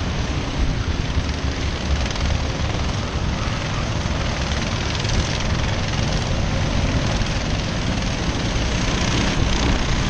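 A pack of racing karts' engines buzzing at a distance as they lap the circuit, mixed with wind rumbling on the microphone; it grows a little louder near the end as the karts come closer.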